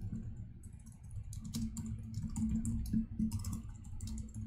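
Typing on a computer keyboard: rapid runs of key clicks, with a short lull in the first second and then a steady patter of keystrokes.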